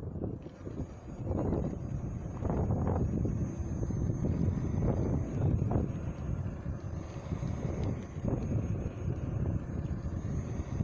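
Wind buffeting the microphone of a moving electric unicycle rider: an uneven low rumble with gusty swells that grows louder about a second in.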